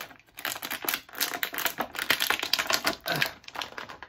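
Clear plastic bag crinkling and crackling in quick, irregular clicks as an action figure is worked out of it.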